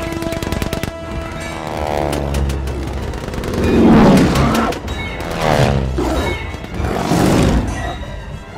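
Film soundtrack: a rapid burst of biplane machine-gun fire in the first second, then propeller biplanes diving past one after another, their engine pitch falling as each sweeps by, over dramatic film score music.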